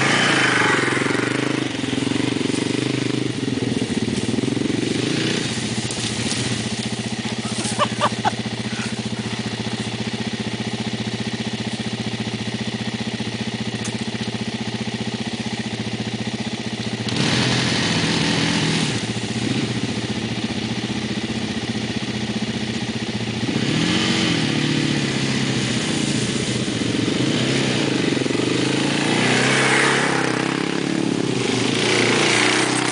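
Sport ATV engine idling steadily, with revs rising and falling about seventeen seconds in and again from about twenty-four seconds as the quads get under way. Three short blips sound about eight seconds in.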